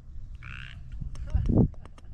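A brief hiss, then a person's short low vocal sound with a few light clicks around it, over a steady low rumble of wind on the microphone.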